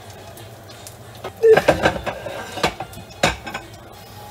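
Kitchenware clattering at the counter: a quick run of clinks and knocks of dishes and utensils, the loudest about a second and a half in, over a low steady hum.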